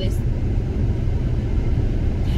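Steady low road and engine rumble inside a moving car's cabin at highway speed.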